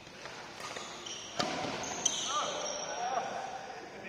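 Badminton play: sharp cracks of rackets striking the shuttlecock, the loudest about a second and a half in, and short high squeaks of court shoes on the floor, with voices in the background.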